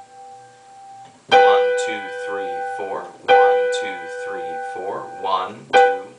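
Digital piano playing the interval of a sixth, B4 and G5 together in the right hand. It is struck about a second in and again about two seconds later and held each time, with another short strike near the end. A man's voice talks quietly between the notes.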